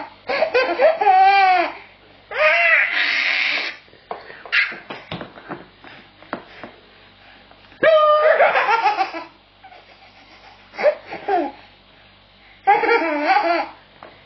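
Baby belly-laughing in repeated loud bursts of a second or two, the pitch swooping up and down, with short pauses between them. A few short clicks sound in the pauses.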